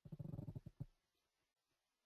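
A brief low, rasping vocal noise, under a second long, like a creaky 'hmm' or a throat being cleared.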